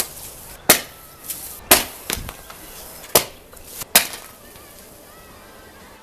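Pressurized, freezer-chilled soda cans thrown onto a concrete walkway, striking and bursting with sharp bangs, about six over the first four seconds.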